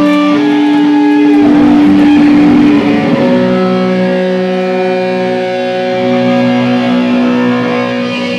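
Live hardcore band's electric guitars ringing out long held chords, with little drumming; the chord changes about three seconds in.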